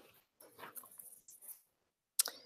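Near silence: room tone with a few faint, brief noises.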